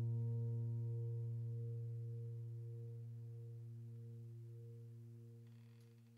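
Background piano music's last low note ringing out and slowly fading away.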